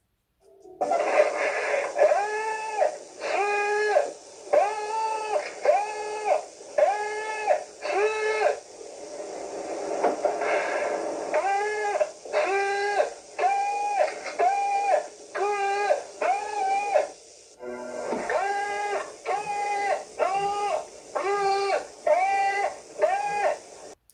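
Recording of a man yelling a Japanese SOS message into a cassette tape recorder, one drawn-out syllable at a time with a short pause for breath after each. A steady hiss runs under the voice, and there is a longer pause about nine seconds in.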